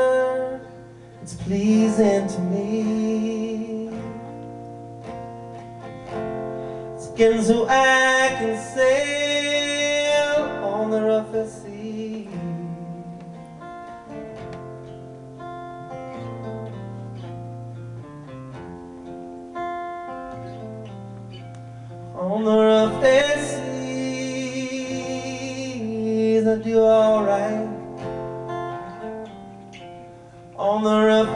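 A man singing to his own steel-string acoustic guitar in a live solo performance. Sung phrases alternate with stretches where the guitar rings on alone.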